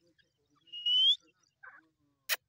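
Grey francolin giving one thin whistled call that rises in pitch, about half a second long near the middle, followed by a short faint call.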